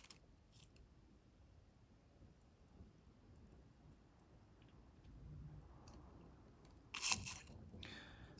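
Faint, sparse crackling of a small fire burning offerings, with a brief louder rush of noise about seven seconds in.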